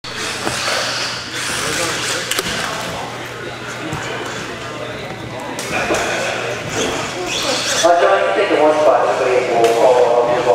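Indistinct voices and chatter echoing in a large indoor hall, with scattered knocks. A clearer, louder voice comes in close by near the end.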